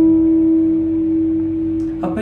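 A single note on a Squier electric guitar, clean tone, held and ringing out, slowly fading.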